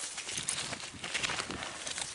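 Rustling and irregular light clicks of handling close to the microphone as the gardener shifts and rummages, with a bunch of metal keys on a carabiner at his hip jingling.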